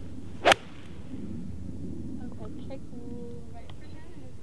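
A four iron striking a golf ball on a full swing: one short, sharp crack about half a second in, over a steady low rumble of the open air.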